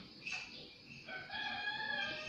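A rooster crowing faintly: one drawn-out crow, held at a steady pitch for about a second in the second half.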